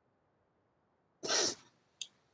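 A single short, breathy puff of air from a person a little past a second in, heard over an otherwise near-silent line, like a quick intake of breath before speaking.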